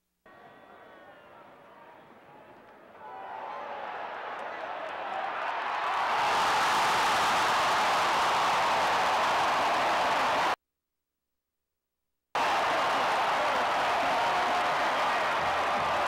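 Football stadium crowd, faint at first, swelling over a few seconds into loud, steady cheering. The sound cuts out completely for about two seconds past the middle, then the cheering carries on.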